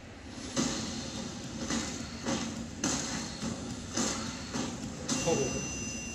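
A series of heavy, echoing thuds from a film trailer's soundtrack, about six of them, unevenly spaced.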